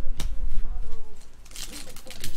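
Foil wrapper of a trading-card pack crinkling and tearing from about one and a half seconds in, after a stretch of background voice.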